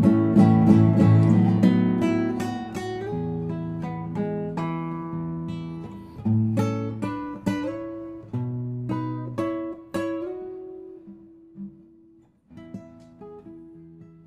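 Solo nylon-string classical guitar, fingerpicked: full chords at first, then single plucked notes and chords that thin out and grow quieter, with a brief pause about twelve seconds in before soft notes resume.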